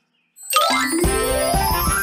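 A short silence, then about half a second in a bright chime with a rising, sparkly sweep, running straight into an upbeat children's intro jingle with a steady bass beat.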